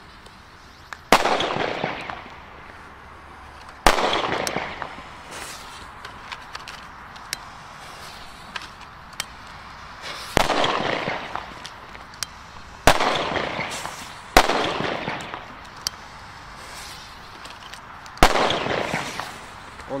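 Blackboxx Vaporizer firecrackers (Böller) going off one at a time: about six very loud, sharp bangs at uneven intervals, each trailing off over a second or two.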